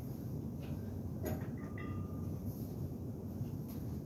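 Quiet gym background: a steady low rumble, with a faint knock a little over a second in.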